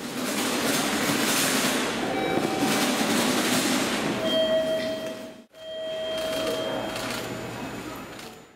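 Steady rushing rumble of a train running through the station, with a thin steady whine joining about four seconds in. The sound cuts out briefly just after five seconds, then resumes.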